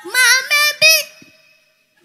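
A young boy's voice through a microphone: three loud, high-pitched syllables held on steady notes, sung or chanted, in the first second, then dying away to near quiet.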